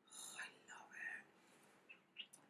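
Faint whispered speech for about the first second, then near silence.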